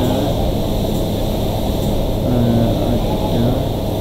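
Loud, steady background rumble with faint, indistinct voices in it.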